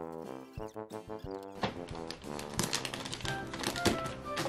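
Background music with sustained brass-like tones. From about one and a half seconds in, there is dense crackling and rustling of wrapping paper as it is folded around the end of a gift box.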